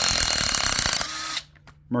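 Cordless impact tool hammering a cylinder head bolt loose, a loud run of rapid impacts that stops abruptly about a second and a half in.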